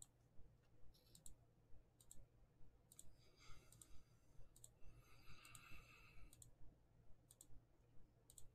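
Computer mouse button clicked over and over, about once a second, each click a quick double tick of press and release. The clicks are faint.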